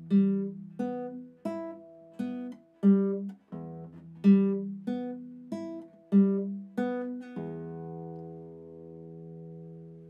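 Nylon-string classical guitar fingerpicked one note at a time, about a dozen notes at an even pace, each cut short as the left hand stops the strings. Near the end a last note with several pitches is left to ring.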